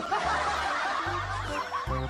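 Laughter: a run of snickering chuckles over background music with a pulsing bass line.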